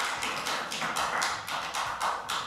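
A quick, regular run of sharp taps, about four to five a second, going on steadily throughout.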